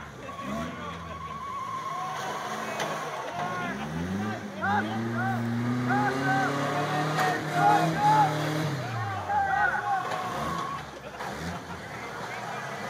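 Off-road truck engines revving hard on a dirt track: the engine note climbs about four seconds in, holds high for several seconds, then drops away near the end as the trucks pass.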